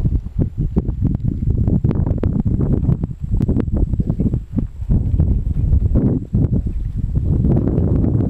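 Wind buffeting the microphone: a loud, uneven low rumble with scattered clicks.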